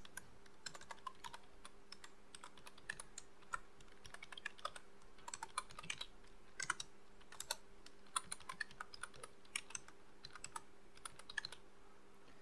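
Computer keyboard being typed on: faint, irregular key clicks coming in quick runs.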